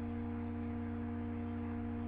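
A steady hum made of several constant tones, unchanging throughout.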